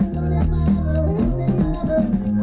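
Live band music played loud through a festival PA and heard from within the audience: a steady bass line, regular drum strokes and a singing voice.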